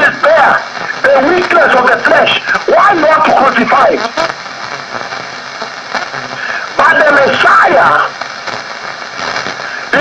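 Speech only: a man preaching into a microphone, in two stretches with a pause of a couple of seconds between them.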